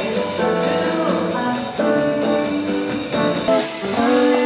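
Live jazz quartet playing: archtop guitar, upright double bass and drum kit, with cymbal strokes keeping a steady beat.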